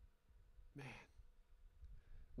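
A man's short, quiet sigh close to a handheld microphone, about a second in; otherwise near silence.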